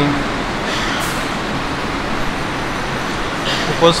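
Steady, even background hiss and rumble of room and recording noise in a pause in a chanted sermon. The chanting voice fades out just after the start and comes back near the end.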